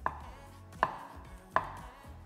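Chef's knife slicing through sausages and striking a wooden cutting board: three sharp chops about three-quarters of a second apart.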